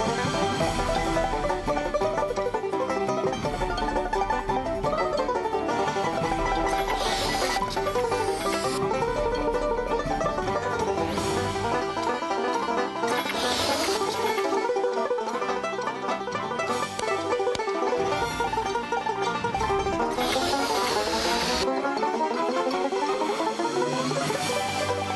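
Fast banjo picking, dense rapid notes in a bluegrass-style duel tune. Several short bursts of hissing noise cut across it, and a rising glide in pitch comes near the end.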